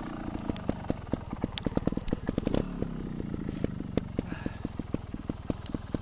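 Trials motorcycle running at low revs as it rolls over rough grass, with frequent irregular clicks and knocks over the engine's low hum.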